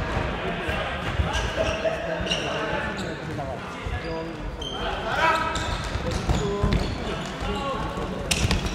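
Futsal match sounds on an indoor hard court: the ball being kicked and bouncing in repeated short thuds, mixed with players' scattered shouts.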